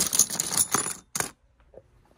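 Loose computer processor chips, fibreglass packages with metal lids, clattering and clinking against each other as a hand rummages through a box of them. A rapid jumble of clicks stops about a second in, with one last clink just after.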